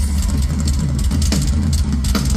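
Live country band playing loud through a concert PA, heard from the crowd: heavy, deep bass with a few drum hits.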